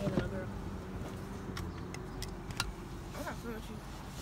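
Steady low rumble of a car's interior while driving, with a few faint clicks.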